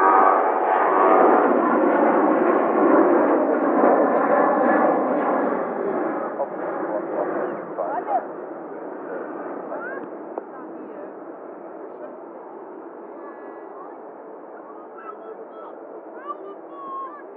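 Boeing 787-8 Dreamliner's jet engines rumbling loudly during the landing rollout, the roar dying away over the next several seconds as the airliner slows on the runway.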